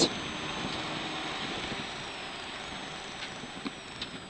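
Rally car driven at speed on a gravel stage, heard from inside the cabin: a steady wash of engine and road noise that eases slightly, with a faint thin high whine that sinks in pitch and jumps back up near the end.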